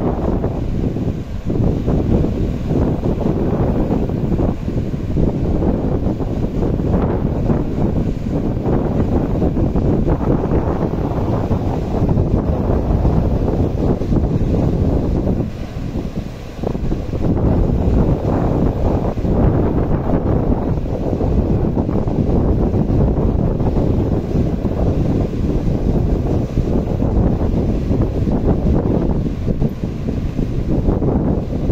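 Strong wind buffeting the microphone in a heavy low rumble, over surf from a rough sea breaking on a sandy beach. The rumble eases briefly about halfway through.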